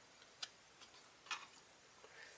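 Near silence broken by a few faint ticks of paper trading cards being handled: a sharp tick about half a second in, a weaker one, then a short flick of card a little after the middle.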